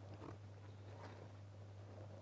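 Near silence: a steady low electrical hum under faint room tone.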